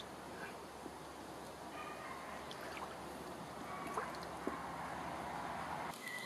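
Faint, steady sound of a small brook's water flowing, with a few faint clicks.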